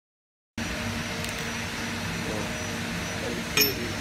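A steady machine hum and room noise start about half a second in. Near the end, stainless-steel parts give a sharp metallic clink that rings briefly.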